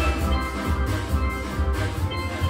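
Steel band playing a tune: many steel pans struck in a steady rhythm, their ringing notes layered over deep bass notes.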